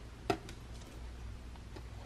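A single sharp click of a clear plastic deli-cup lid being handled, about a third of a second in, followed by a few faint light ticks over a low steady hum.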